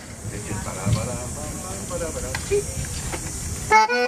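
Faint background voices and hiss, then a concertina starts playing with full chords near the end.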